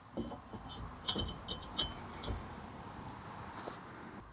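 Two-inch square steel tube of a hitch-mount umbrella arm being slid into a car's trailer-hitch receiver: metal scraping with a series of clanks and clinks, the loudest a little after a second in.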